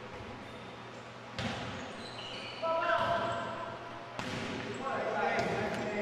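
A volleyball struck by players' hands and arms several times during a rally, each hit a sharp slap echoing in a gym, with players calling out between hits.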